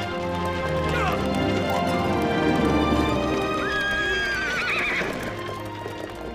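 A horse whinnying over background music of sustained notes: a short falling call about a second in, then a longer whinny from about three and a half seconds in that holds a high pitch and then falls away in wavers. Hooves clop underneath.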